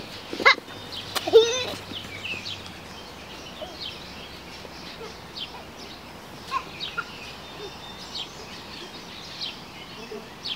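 Small birds chirping repeatedly in short high notes. Two loud brief cries stand out in the first two seconds, the second one wavering in pitch.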